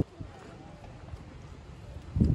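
Quiet outdoor ambience with a few soft taps.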